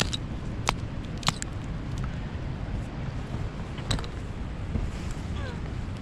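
Steel rock hammer striking and prying at sandstone: a handful of sharp, separate clicks and knocks over several seconds, breaking off a small chip of rock. Low wind rumble on the microphone underneath.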